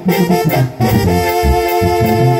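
Live band music in an instrumental break between sung lines. Held, saxophone-like lead notes play over bass and drums.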